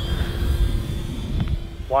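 FMS Zero 1100mm RC warbird's electric motor and propeller giving a steady hum as it flies overhead, under heavy wind buffeting on the microphone.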